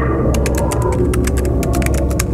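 Rapid computer-keyboard typing clicks, several a second, starting just after the beginning, over a loud, steady low rumbling drone.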